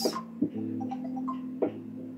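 Soft background music holding a steady sustained chord, with two light clicks, one about half a second in and one near the end.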